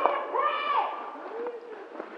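A person's voice making a drawn-out vocal sound that rises then falls in pitch, followed by a fainter, shorter one about a second later.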